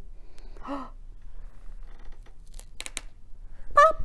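A woman gasps about half a second in. A few faint clicks follow around the middle as a paper button is pulled off a felt board, and a short vocal exclamation comes near the end.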